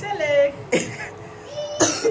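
A brief untranscribed voice, then two sharp coughs about a second apart.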